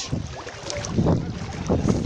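Wind buffeting the camera microphone in low rumbling gusts, loudest about a second in and again near the end, with sea water sloshing around a person wading.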